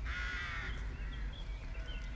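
A bird calling: one long call lasting nearly a second at the start, then a couple of fainter, shorter calls, over a steady low rumble.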